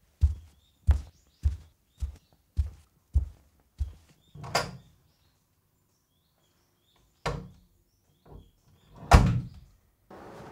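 Footsteps going down a staircase, evenly paced thuds just under two a second that grow fainter, then a few separate heavier thumps, the loudest near the end.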